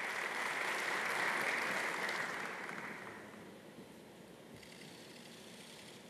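Audience applauding, swelling and then dying away about three seconds in.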